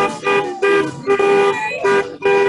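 Car horns honking in celebration as cars drive past, a quick string of short and longer blasts, about six in two seconds, on one steady note.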